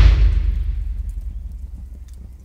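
A deep boom sound effect hits at the start, and its rumble fades away over about two seconds: a logo-sting impact with no music or speech over it.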